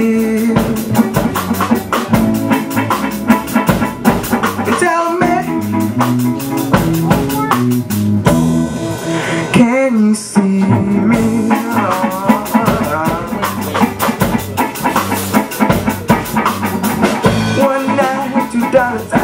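Live rock band playing: electric guitar, bass guitar and drum kit, with steady cymbal and drum strikes.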